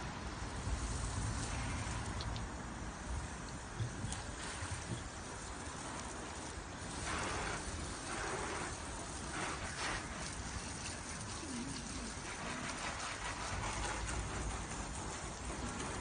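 Water spraying from a trigger nozzle fed by a 12 V deck wash-down pump and spattering on the side of a car: a steady hiss, with a few brief louder gusts of spray partway through.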